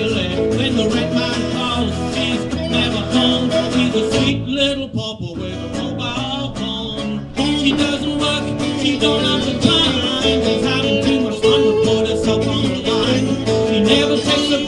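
Live band playing: strummed acoustic guitar with electric guitars and drums. The sound thins out and drops for a few seconds in the middle, then the full band comes back in.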